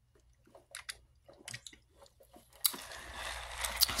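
Soft mouth sounds of sipping and chewing from a drink cup: scattered small clicks and smacks. About two and a half seconds in, a sharp knock and then steady rustling as the phone is handled and moved.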